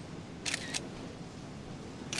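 Two quick, sharp kiss smacks about a quarter second apart, about half a second in, over faint street background.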